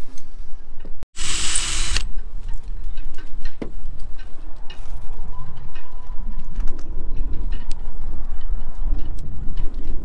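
A cordless drill runs briefly, for under a second, about a second in, drilling out old hatch screw holes in a fibreglass deck. Afterwards there is a steady low rumble of wind on the microphone, with small scattered clicks and knocks from handling tools.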